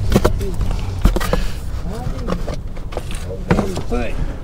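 Handling at an open car door and a cardboard box on the back seat: scattered knocks and clicks, with a heavier thump about a second in.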